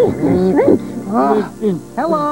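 Wordless puppet-character voices: several short cries that rise and fall in pitch, over background music.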